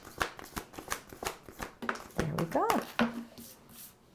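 A deck of oracle cards being shuffled by hand, a quick run of soft card clicks and riffles, with a brief murmured voice partway through.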